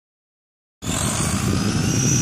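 Traxxas Rustler RC truck's electric motor and gearbox whining at speed as it accelerates away over asphalt, starting abruptly just under a second in. The drivetrain has a new ESC and a cleaned-out gearbox that the owner still thinks needs replacing.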